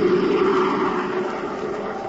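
Jet aircraft flying past: a rushing engine noise with a steady hum, slowly fading as it moves away.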